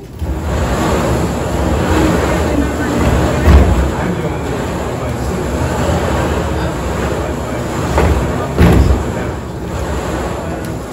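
Small balls rattling and tumbling inside a wooden drawing cabinet as it is churned for the next draw. It makes a steady rumble, with a louder knock about a third of the way in and again near the end.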